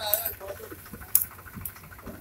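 Dry weeds and grass rustling and crackling as they are pulled up by hand, with a sharp snap about a second in and a softer one shortly after. A voice speaks briefly at the start.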